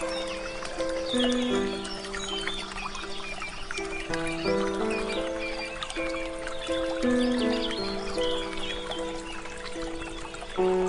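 Slow, calm instrumental music of long held notes stepping through a gentle melody, over small birds chirping and a light trickle of water.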